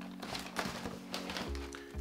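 Cardboard shoebox being handled and its lid opened: light taps and rustling over the first second and a half, with steady background music underneath.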